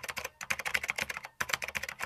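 Typing sound effect: a fast run of key clicks that accompanies text typing onto the screen, with a brief pause just under a second and a half in.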